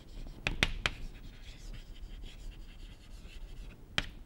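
Chalk writing on a chalkboard: a few sharp taps about half a second in, then light scratching strokes, and another tap near the end.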